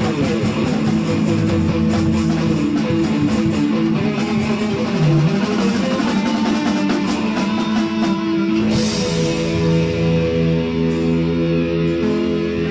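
Instrumental rock trio playing live: electric guitar, electric bass and drum kit, with steady cymbal strokes over sustained guitar and bass notes. A cymbal crash about nine seconds in, after which the drumming thins and the guitar notes ring out longer.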